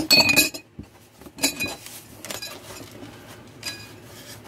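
Drinking glasses clinking against each other as they are handled in a cardboard box: a quick cluster of ringing clinks at the start, then single clinks spaced out through the rest.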